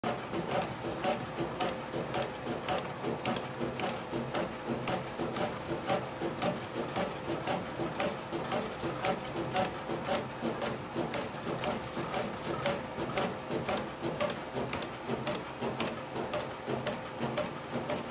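A 2024 Easton Hype Fire composite bat being turned by hand between the rollers of a bat-rolling machine, making a continuous run of irregular clicks and ticks over a faint steady hum. The rolling is breaking in the bat's composite barrel.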